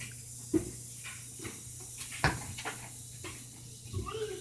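A soccer ball being kicked and dribbled by boys playing: two sharp knocks, about half a second in and just after two seconds, with lighter taps and scuffs between, over a steady low hum.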